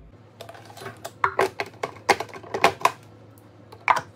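Hard plastic clicks and clacks as a food processor's lid is unlocked and lifted off and a spatula works in its plastic bowl. There are about a dozen sharp knocks from about half a second to three seconds in, then two more near the end.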